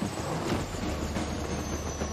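Train running on rails: a steady low rumble, with a thin high tone slowly falling in pitch over it.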